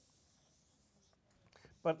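Dry-erase marker drawing a long line on a whiteboard: a faint, high scratchy rubbing of the felt tip, followed by a few light taps and clicks about a second and a half in.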